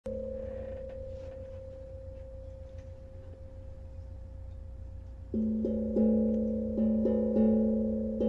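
A singing bowl rings with two steady tones, fading slowly. About five seconds in, a steel tongue drum starts playing, with about six ringing notes struck a fraction of a second apart.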